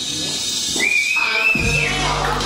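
A single high, slightly wavering whistle held for about a second. Music with a deep bass comes in shortly before the end.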